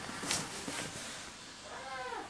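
Faint rustling of bedding as a man settles onto a bed, with a short rising-and-falling vocal sound near the end.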